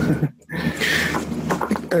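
A man laughing briefly, a breathy burst of laughter mixed in with conversation.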